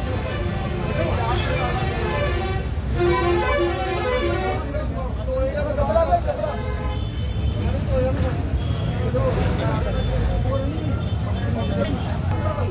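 Street traffic noise with a vehicle horn giving a few short toots about three seconds in, under people's voices.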